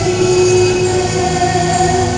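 A woman singing long held notes into a microphone, accompanied by violin and keyboard.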